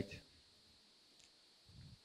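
Near silence: room tone, with one faint sharp click about a second in as the presentation slide is advanced.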